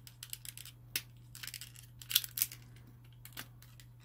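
Clear plastic blister packaging crackling and clicking as a tiny die-cast toy car is pushed out of it by hand: irregular sharp crinkles, loudest about two seconds in. A faint steady hum lies underneath.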